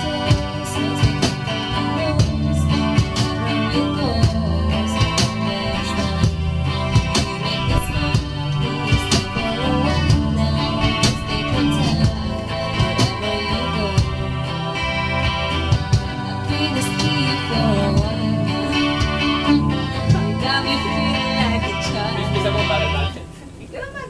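Strummed electric-acoustic guitar played through a small amp, with steady cajón beats. The playing stops about a second before the end.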